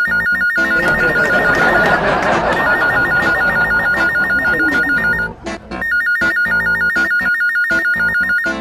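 Electronic ringtone-style music: a rapid two-note trill repeating in phrases over a beat, with short breaks between phrases. A rush of noise sounds under it from about one to five seconds in.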